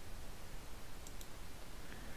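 Low steady hiss of a quiet recording, with a faint computer-mouse click about a second in as the presentation slide is advanced.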